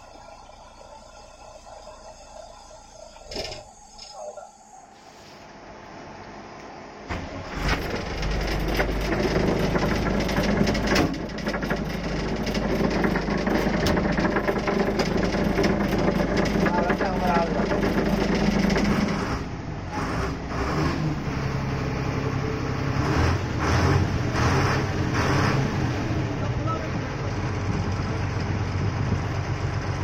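Ashok Leyland bus's diesel engine coming to life about seven seconds in after a quiet stretch with a couple of clicks, then running with a steady low rumble that shifts in tone a little past halfway.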